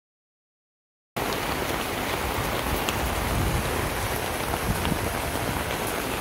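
Heavy storm rain pouring down, a steady hiss with scattered drop ticks, starting abruptly about a second in.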